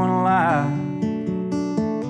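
Solo acoustic guitar played live, picking and strumming separate notes, with a held, wavering vocal note trailing off in the first half second.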